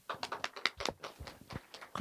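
A quick, irregular run of sharp taps and clicks, several a second.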